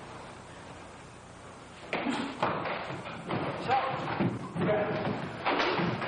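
Low hall ambience, then from about two seconds in a rapid, irregular series of thuds from bare-knuckle punches and kicks landing in a Kyokushin full-contact karate bout, mixed with shouts.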